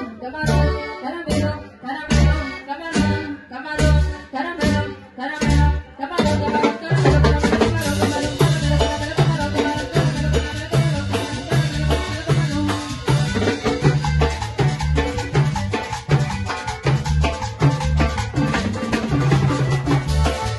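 Live tropical dance band playing a quebradita-style number with congas, a metal scraper, electric guitar and accordion. It is sparse at first, with strong bass notes on the beat, and the full band fills in about seven seconds in.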